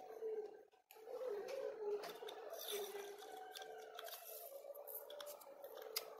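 Faint handling noise of hands working a PVC pipe and paper while packing a homemade firework tube: scattered soft rustles and clicks. The sound briefly cuts out about a second in.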